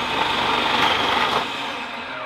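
Electric food processor running on high with its shredding disc, shredding raw beets pushed down the feed tube. It is a dense, steady motor-and-cutting noise that gets somewhat quieter in the last half second as the beets finish going through.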